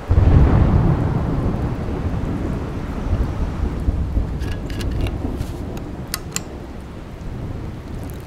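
A deep rumble that starts suddenly and loudly, then fades slowly over several seconds. A few sharp small clicks come about four to six seconds in, as a thermos cap is worked open.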